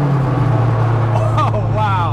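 The Mini's 2-litre 16-valve Vauxhall four-cylinder on throttle bodies eases off in revs just at the start, its note dropping a little. It then runs steadily at cruising speed, with a person's voice over it in the second half.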